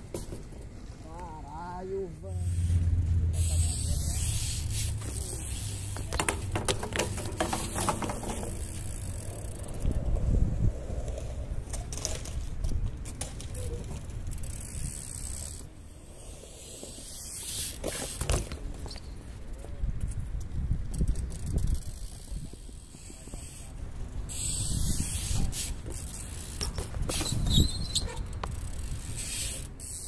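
Irregular hissing and rumbling noise, typical of wind buffeting the microphone outdoors, with indistinct distant voices at times.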